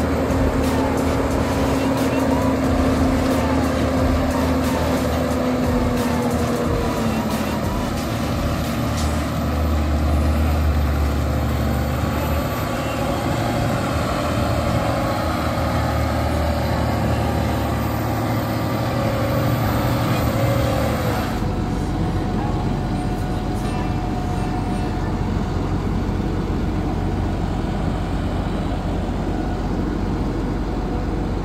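Fendt tractor's diesel engine running under heavy load as its dual wheels churn through deep mud, with a steady whine that drops in pitch about seven seconds in. About twenty-one seconds in the sound changes abruptly, the higher hiss falling away.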